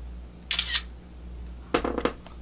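Smartphone camera shutter sound about half a second in as a flash photo is taken, followed by another short burst near the end.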